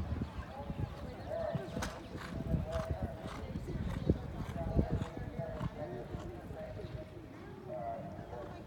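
Hoofbeats of a horse cantering on sand footing, heard as scattered soft knocks, with people's voices talking in the background.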